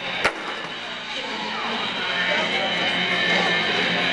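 Skateboard slapping down hard on a wooden floor once, about a quarter second in, over a steady background of crowd chatter and music.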